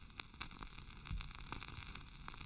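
Faint crackling static and hiss, with scattered clicks and a couple of low thumps.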